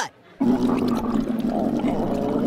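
Cartoon sound effect of a stomach growling: a long, low rumble that starts about half a second in and carries on steadily.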